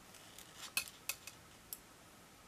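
Faint, light clicks of 5 mm knitting needles tapping against each other as a stitch is worked, several separate ticks.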